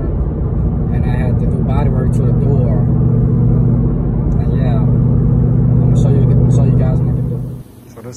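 Steady low engine and road hum inside a moving car's cabin. It cuts off suddenly near the end.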